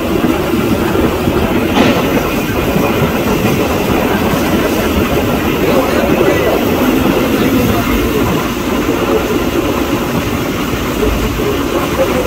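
Steady rumble of a fishing boat's inboard engine running, mixed with wind and the wash of the sea.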